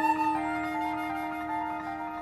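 Instrumental show music: a flute playing over a held low note, with the notes above it changing in steps.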